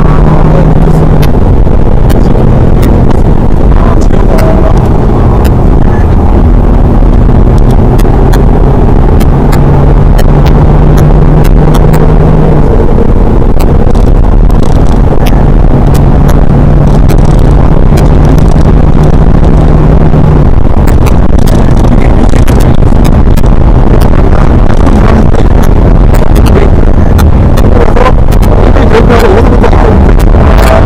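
BMW 120d's four-cylinder turbodiesel engine heard from inside the cabin on track, its note holding steady and then shifting pitch in steps every few seconds, over constant loud road noise.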